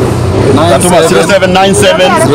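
Speech: men talking, with no other clear sound.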